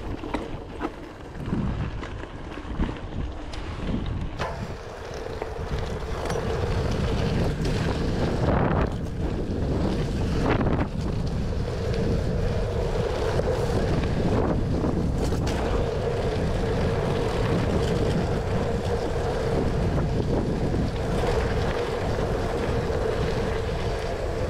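Wind buffeting the microphone and mountain-bike tyres rolling over a gravel track, a steady rush with a faint steady hum under it. A few knocks from bumps come in the first seconds, and the rush grows louder about five seconds in as the bike picks up speed.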